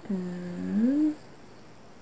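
A woman humming a single closed-mouth "hmm", about a second long. It holds one low note, then rises in pitch and gets louder before it breaks off.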